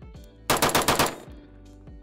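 Blackout Defense Quantum MK2 AR-15 rifle fired in a fast string of about eight shots within under a second, the shots running together almost like automatic fire.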